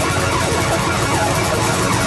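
Live band playing loudly through a stage PA: electric and acoustic guitars, bass guitar and drums in a dense, unbroken wash of sound.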